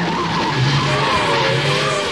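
The Batmobile launching: tyres screeching with a wavering squeal over a loud rushing jet-turbine noise.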